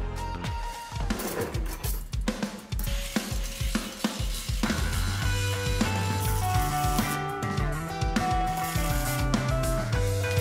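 Background music with a steady drum beat, bass line and held melody notes.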